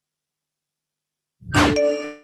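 Silence, then about a second and a half in a struck metallic chime rings out with several held tones, the opening of a radio show jingle.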